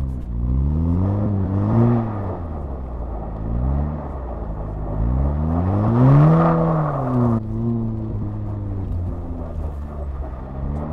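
Turbocharged four-cylinder engine of a manual VW Golf R, fitted with a cold air intake and a resonator-delete exhaust, revs up and falls back twice while driving on snow and ice. The second rise is louder, and the rushing noise with it cuts off suddenly near the end.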